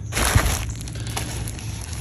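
A packed tent in a crinkly Dyneema stuff sack rustles as it is handled and set down on a digital scale. There is a soft thump about a third of a second in, then fainter crinkling.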